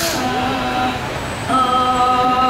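Thai classical ensemble music of the kind that accompanies khon: a reedy wind instrument holding long, steady notes that step from one pitch to the next. A small cymbal is struck once right at the start.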